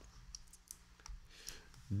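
A few faint, sharp clicks scattered through a pause, over quiet room tone.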